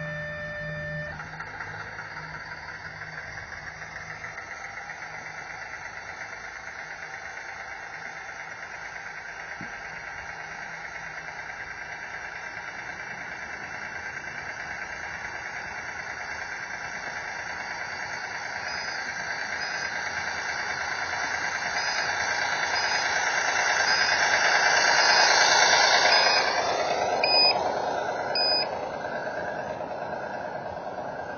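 Radio-controlled garden-railway locomotive with a train of small wagons running along the track toward the microphone, its steady running noise growing louder until it passes close by near the end. A beep of about a second at the start and two brief beeps near the end.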